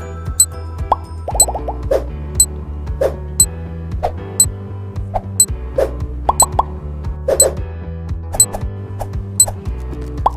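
Countdown-timer sound effect: a sharp tick about once a second over light background music with a steady bass line and short plopping notes.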